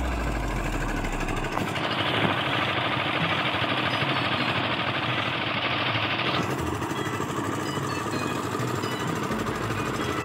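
A steady running engine.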